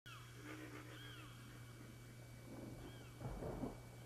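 Faint animal calls, a few short cries that arch up and fall in pitch, over a steady low hum. About three seconds in comes a louder, rough low sound.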